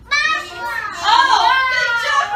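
Several young children's high-pitched voices calling out at once, starting suddenly and staying loud.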